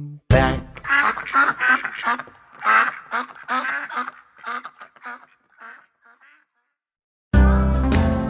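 Ducks quacking: a rapid string of short quacks that dies away over about six seconds. After a brief silence, upbeat children's music starts near the end.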